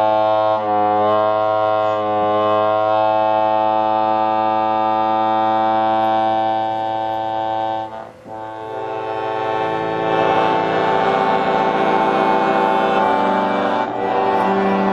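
Piano accordion played solo: long sustained chords for the first eight seconds, a brief break, then quicker, pulsing notes.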